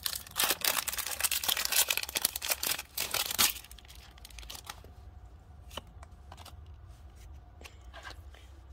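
Foil wrapper of a Pokémon trading card booster pack being torn open and crinkled for about three and a half seconds, followed by a few faint clicks as the cards are handled.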